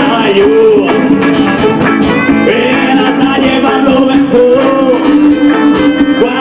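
Live Latin dance band playing, with electric guitar among the instruments.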